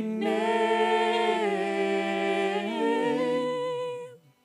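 Worship team singing in harmony with several voices, mostly unaccompanied, holding long sustained notes that shift pitch a couple of times before the singing stops near the end.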